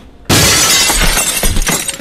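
A pane of window glass shattering: a sudden loud crash about a third of a second in, with a spray of breaking and falling glass that dies away just before the end.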